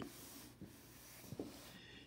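Pen drawing a curve on workbook paper: a faint, scratchy stroking of the pen tip, with a couple of light ticks.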